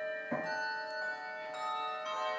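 Handbell choir ringing a chord: several bells struck together about a third of a second in, with a few more struck near the end, their tones ringing on and overlapping.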